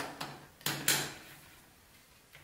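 Small plastic Numicon shapes clicked and tapped down onto a tabletop: a few sharp clacks in the first second, then quiet.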